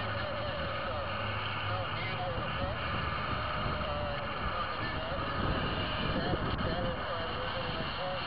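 Steady low hum of a car's engine idling at a stop, heard from inside the cabin, with a muffled voice-like sound underneath.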